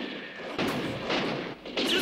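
Film pistol gunshots in a shootout: three shots, a little over half a second apart.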